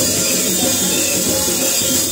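Loud, lively church worship music driven by drums: a drum kit and hand drums keeping up a dense, steady beat.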